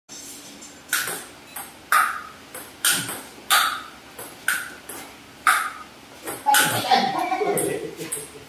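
Table tennis rally: the ball's sharp clicks off the paddles and the table, alternating louder and softer about every half second. Near the end, voices call out over the play.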